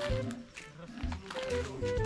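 Quiet background music with low held notes.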